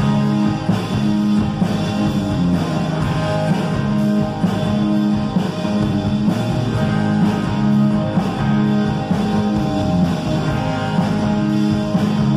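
Live rock band playing an instrumental passage led by electric guitars, with no singing.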